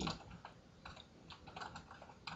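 Computer keyboard being typed on: a faint, irregular run of keystrokes, several a second, as a short phrase is entered.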